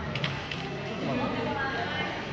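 SLR camera shutter firing: a few quick clicks in the first half-second.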